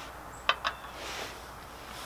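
Two quick light clicks, then a short sniff as a man smells a paper fragrance test strip.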